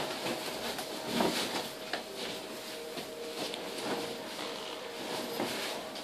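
Rustling and handling noise of a large white fabric light tent being gripped and pulled by hand, with a few faint knocks as its steel hoops shift. A faint steady tone sits underneath.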